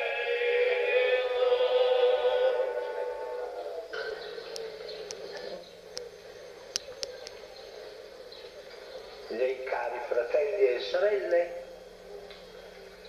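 A singing voice at an outdoor mass holds a long chanted note that dies away about three to four seconds in. A low steady hum and a few sharp clicks follow, and then a voice about two-thirds of the way through.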